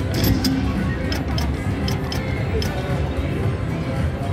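Video slot machine's electronic game sounds as a new spin is played: machine music with a string of short ticks and chimes while the symbols spin, over casino background chatter.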